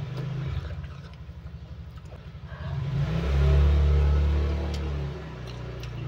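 A vehicle engine running with a low, pulsing hum. It swells louder about three seconds in and eases back a couple of seconds later.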